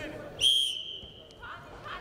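Referee's whistle, one sharp blast about half a second in that fades out within about a second, stopping the wrestling bout.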